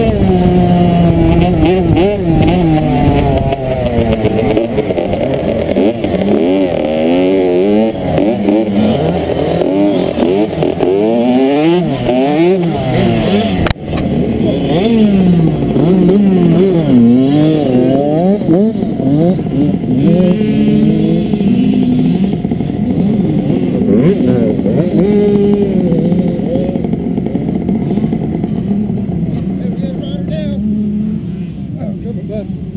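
Dirt bike engine heard from a helmet-mounted camera, revving up and down hard through the gears. The sound drops out abruptly for a moment about 14 seconds in. In the last third the engine sound is steadier and lower.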